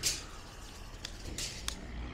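A few short, sharp clicks over faint background noise, one right at the start and two more about a second and a half in, as a steel tape measure is handled and drawn back along a wooden truck-box floor.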